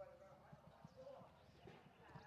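Near silence: faint distant voices, with a few soft low taps.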